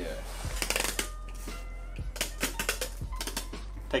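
A run of small irregular clicks and taps from counter work, bunched in two spells, over a low steady hum and faint music.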